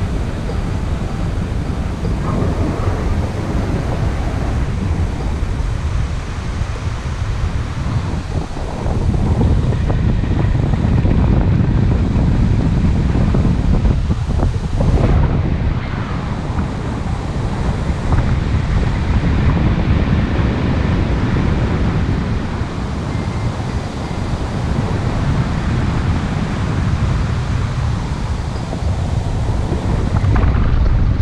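Wind rushing over the microphone of a camera worn by a paraglider pilot in flight, a steady low rumble that grows louder about nine seconds in.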